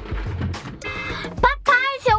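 Background music with a steady beat, with a high voice-like melody sliding up and down near the end.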